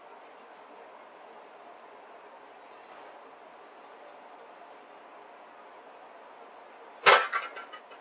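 Stainless steel mixing bowl and spoon as watermelon salad is scraped out into a serving bowl: faint steady kitchen background for most of the time, then about seven seconds in a sharp clatter of several quick knocks that die away fast.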